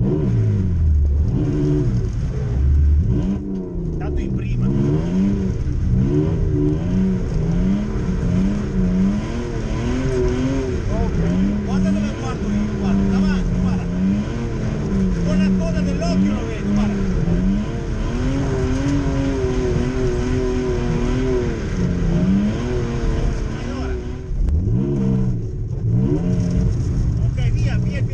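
Drift car's engine heard from inside the cabin, revving up and easing off over and over, its pitch rising and falling, with a deep drop and climb near the end.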